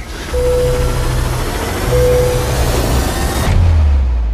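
Movie-trailer score and sound design: a loud rising noise swell over pulsing low bass, with a short high tone sounding twice. About three and a half seconds in it drops into a deep bass hit.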